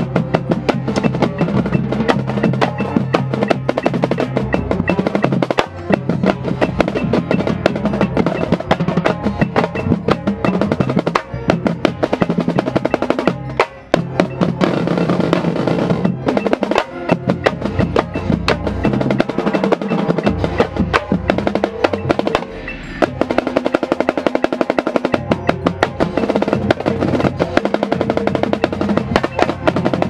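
Marching snare drum played close up in fast, dense patterns with rolls, among the rest of a drumline on tenor drums. The playing breaks off briefly twice, about a third of the way through and again past the middle.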